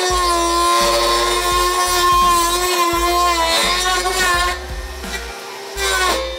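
Greenworks GD24X2TX 48 V cordless brush cutter running at full speed, a steady high motor-and-blade whine as its metal blade cuts into a plastic traffic cone. The pitch sags slightly past halfway as the blade takes the load, and the whine stops about three-quarters of the way in.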